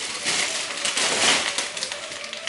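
A thin plastic carrier bag rustling and crinkling as hands rummage through it and pull out a packet.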